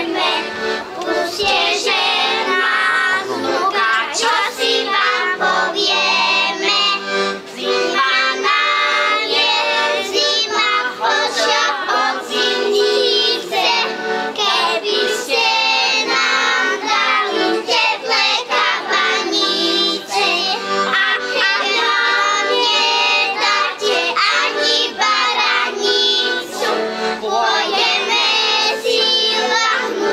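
A group of young children in folk costume singing a song together into stage microphones, the singing continuous and amplified.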